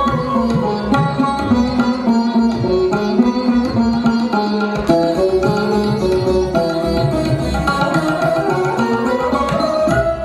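Instrumental Hindustani classical music accompanying Kathak dance: a string melody stepping from note to note over drum strokes.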